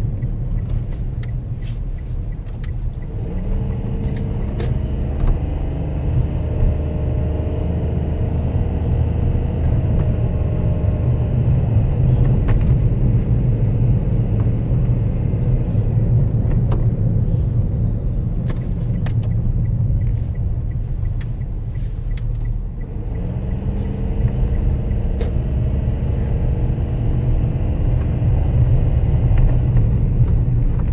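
Inside a moving car: steady engine and road rumble. The engine note comes up twice, about three seconds in and again past twenty seconds, as the car picks up speed. Scattered light clicks and rattles run through it.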